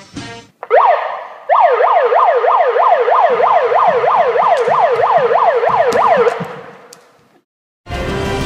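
An electronic alarm siren sounding, its pitch sweeping up and down about two and a half times a second. It starts with a short burst about half a second in, runs steadily, then fades out about a second before the end.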